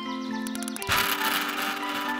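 Background music with steady held notes; about a second in, a buzzing whirr starts up and carries on, the toy radio-controlled speedboat's electric motor and propeller being run from the controller.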